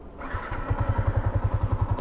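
Yamaha Sniper 150's single-cylinder four-stroke engine starting a moment in, then running at a fast, even idle of about thirteen beats a second.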